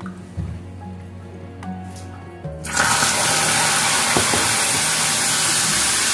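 Water poured into a kadai of hot, dark-brown caramelised sugar: about two and a half seconds in, a sudden loud, steady hiss as the water boils up on the hot caramel.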